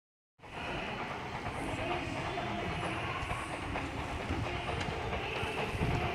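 Steady low rumble of outdoor background noise, starting about half a second in, with a few faint clicks.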